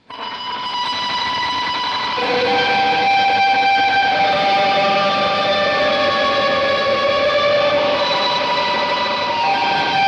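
Electric guitar through an Electro-Harmonix Holy Grail reverb set fully wet into a Laney Lionheart tube amp. Long, washed-out sustained notes fade in over the first second, and the chord changes about two seconds in and again near the end.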